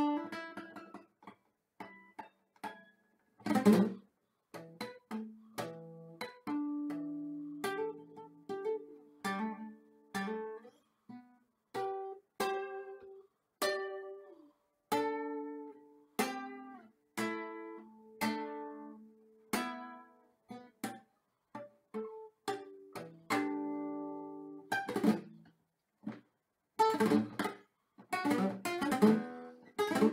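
Solo acoustic guitar played by hand: slow single plucked notes and short phrases left to ring and fade, broken by a loud full chord about four seconds in and another near twenty-five seconds. It turns to denser, faster playing near the end.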